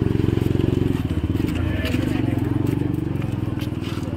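An engine idling close by, a steady low throb that keeps going, with people talking faintly over it.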